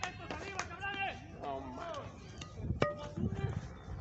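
Several people talking in the background, quieter than a nearby voice, with one sharp click a little before the end.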